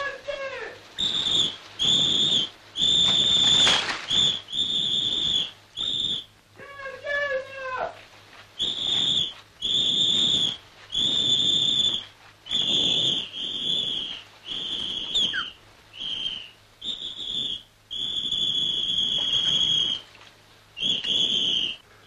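A shrill whistle blown again and again, about fifteen blasts of half a second to two seconds each, with short gaps between them.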